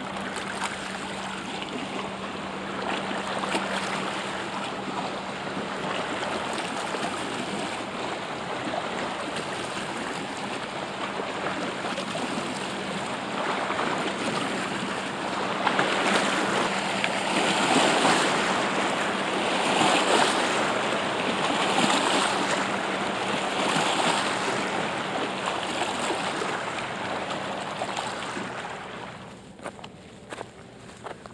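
Steady rushing of moving creek water. In the second half it swells and eases in waves about every two seconds.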